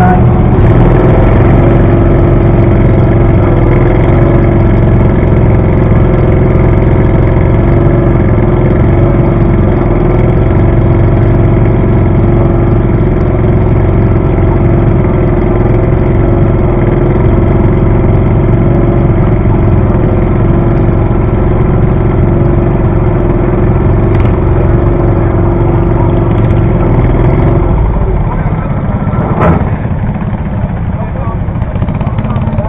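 An engine idling steadily close by at an even pitch, dropping away about two seconds before the end.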